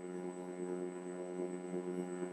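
A steady hum with a stack of even overtones, unchanging throughout, with a faint thin high whine above it.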